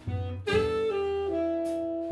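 Live jazz quartet: saxophone playing long, held melody notes that step down in pitch, with a low bass line and the rear rhythm section underneath. A strong note attack comes about half a second in.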